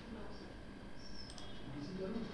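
A computer mouse button clicking briefly, about a second in, over faint room noise.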